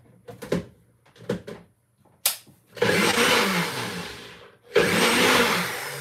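Countertop blender blending a cooked pineapple sauce in two short pulses of about two seconds each, each starting loud and dying away, after a few light clicks and a sharp click just before it starts.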